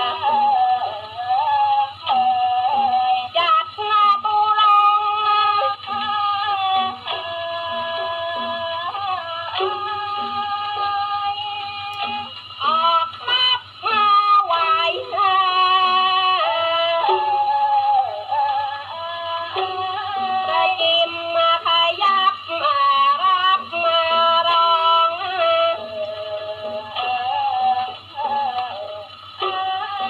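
Old 78 rpm record played on an acoustic gramophone through its soundbox: Thai vocal recording with voices singing a sliding, ornamented melody. The sound is thin, with no top end, and a steady low hum runs beneath.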